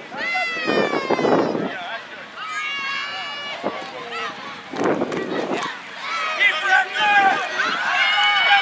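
High-pitched voices shouting outdoors: a long call that falls in pitch, then a second held call, and from about six seconds in several voices yelling at once.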